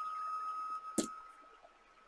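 A single keyboard keystroke about a second in, over a faint steady tone that fades away.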